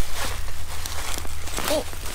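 Rustling and handling noise of large kohlrabi leaves as the plant is gripped and pulled up from the soil, over a steady low wind rumble on the microphone.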